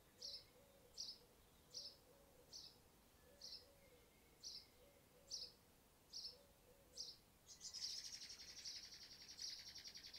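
Faint, short, high chirps repeated about once a second, likely a bird calling. Near the end they give way to a faint, fast, buzzing trill.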